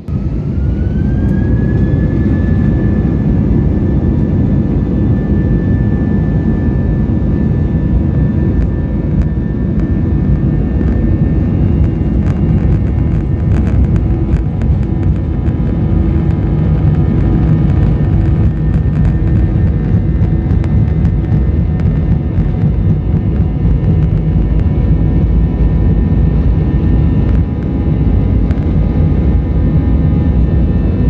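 Airliner jet engines heard from inside the cabin, spooling up to takeoff thrust. Their whine rises in pitch over the first two seconds, then holds as a steady loud roar over a deep rumble through the takeoff roll. A few faint rattles and clicks come in the middle.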